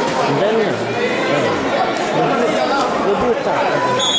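Indistinct chatter of several voices talking at once in an indoor sports hall.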